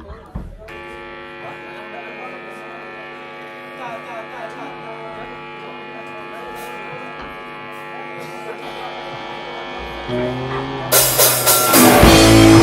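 A sustained, buzzing electric guitar drone held through an amplifier, steady for several seconds. Near the end a bass comes in, and then a rock band crashes in loudly with drums and distorted guitars.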